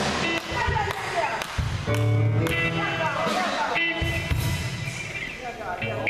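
Live church band playing: drum kit with several cymbal and drum hits, sustained chords and electric bass underneath.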